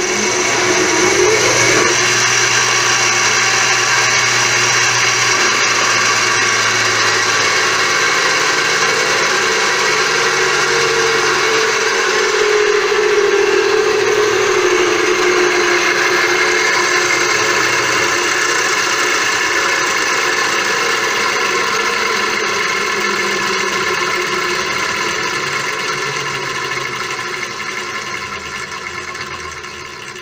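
Home-built inertia dynamometer running: a 1.5 hp electric motor driving two steel brake rotors through a 3-to-1 roller-chain drive, a loud steady whir of motor and chain, with the rotors at roughly 1200 RPM. The pitch rises in the first couple of seconds as it spins up, and the sound fades gradually over the last several seconds.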